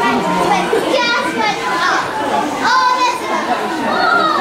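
Crowd chatter, many adults' and children's voices talking and calling out over one another.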